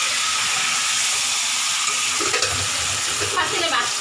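Chicken pieces frying in oil and marinade in a metal pan, sizzling steadily, with a metal spatula stirring and turning them, knocking low in the second half.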